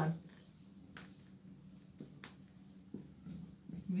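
Marker pen writing on a whiteboard: a few faint, short strokes spaced about a second apart.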